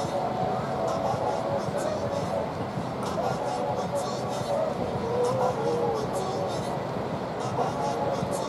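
Indistinct distant voices over a steady rush of wind and breaking surf.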